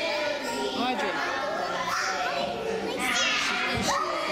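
Many young children's voices chattering and calling out at once.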